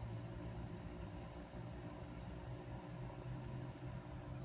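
A steady low electrical hum with a faint even hiss, unchanging throughout, with no distinct knocks or clicks.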